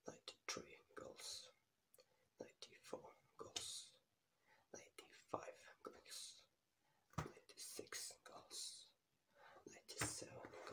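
A man whispering close to the microphone, with sharp hissing 's' sounds and scattered soft clicks between the phrases.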